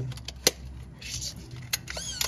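Plastic clicks and handling of a Pentax PG202 compact 35 mm film camera just after film is loaded and the back closed, with one sharp click about half a second in and a few lighter clicks near the end.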